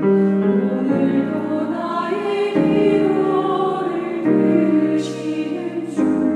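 Women's choir singing a Korean praise song in held chords that shift every second or two.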